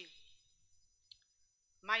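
A woman's voice reading aloud pauses; in the quiet, a single faint click sounds about a second in, and her voice comes back near the end.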